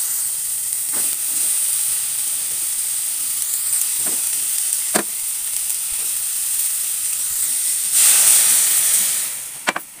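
Vegetables sizzling in hot oil in a steel wok, with a few sharp knocks of the wooden spatula. The sizzle swells about eight seconds in, then dies down sharply near the end.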